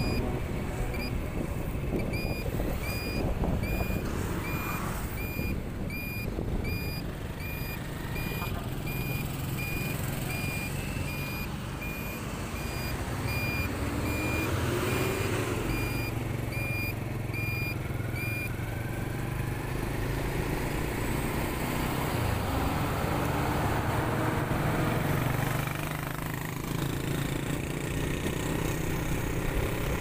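Motorcycle riding along a highway: a steady engine and wind rumble. Over it, for the first eighteen seconds or so, an electronic beeper sounds short high beeps at about two a second, then stops.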